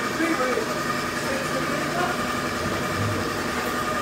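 A steady mechanical hum with several constant tones, as from a running motor or machine, with faint voices in the background.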